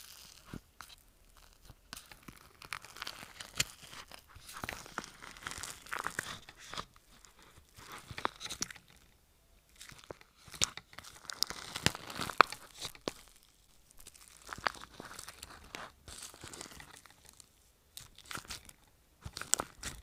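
Fingers squishing, stretching and folding a bubbly, airy slime in a plastic tub, giving clusters of small crackles and pops with sticky tearing, in bursts broken by short pauses.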